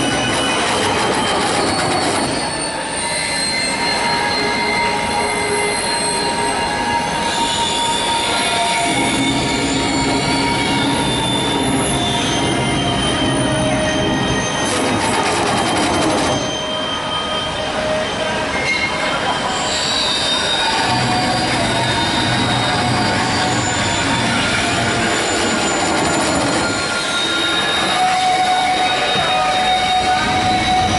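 Electronic music score over loudspeakers: dense, shifting layers of sustained high tones and grinding noise, with no clear beat and a change in texture about halfway through.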